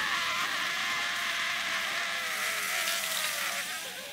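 A red-hot branding iron sizzles against a man's skin in a loud, steady hiss, with his long, strained cry underneath. Both fade out near the end.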